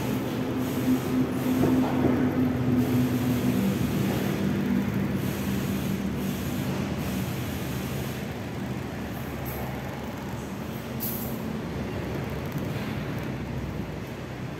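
A steady machine-like rumble with a low hum that drops in pitch about four seconds in and eases slightly in the second half.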